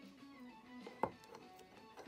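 Quiet background guitar music, with one sharp click about a second in as a card in a rigid plastic holder is set down on its stand.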